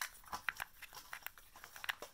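Stirring a runny green slime-kit mixture of liquid and white powder in a small clear plastic cup: a stream of irregular small clicks and scrapes against the cup. The mixture is staying thin and not turning into slime.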